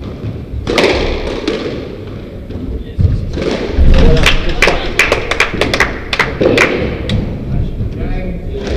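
Thuds and sharp knocks on a wooden squash court, with footsteps. There is a heavy thump a few seconds in, then a quick run of sharp clicks, and indistinct voices now and then.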